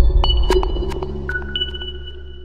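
Electronic outro jingle over the logo end card: a deep bass swell that slowly fades, with high ringing pings and sharp clicks on top.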